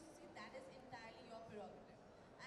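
Speech only: a woman talking into a handheld microphone.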